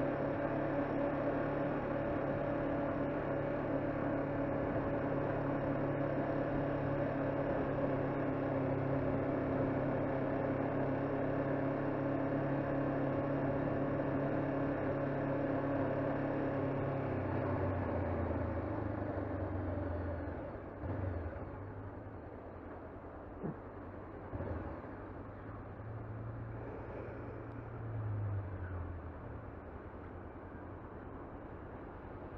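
Honda CBR500R's parallel-twin engine running at steady low revs for about seventeen seconds, then rolling off as the bike slows into stopped traffic, settling to a quieter idle with a few short rises.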